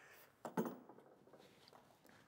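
Near silence: room tone, with one brief faint rustle about half a second in.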